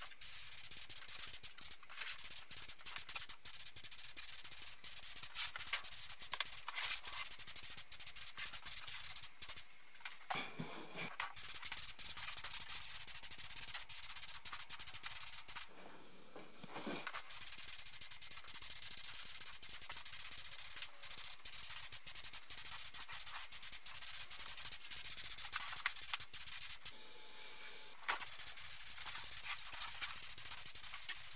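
Spray gun hissing as compressed air atomises paint, in long spells broken by short pauses about ten, sixteen and twenty-seven seconds in.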